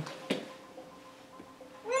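A single click, then near the end a loud, warbling, cartoonish electronic sound effect starts up: the Path for Dash app's intro animation playing through the iPad's speaker.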